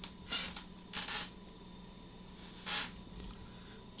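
Quiet room tone with a low steady hum, broken three times by short, soft hissing rustles.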